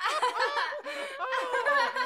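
High-pitched human laughter.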